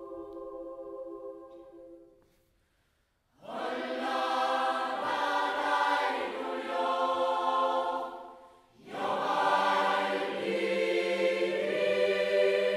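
Choir singing, played back from a concert recording. A held chord dies away about two seconds in, followed by a second of silence. The choir then comes back in loud, breaks off briefly a little past the middle, and sings on.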